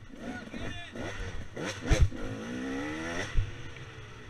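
KTM 300 two-stroke dirt bike engine revving up as it climbs the trail, with a voice calling out beside the track and a thump about two seconds in.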